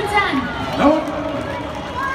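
People's voices in a crowd, one voice drawing out a long, level sound about halfway through; no firework bangs.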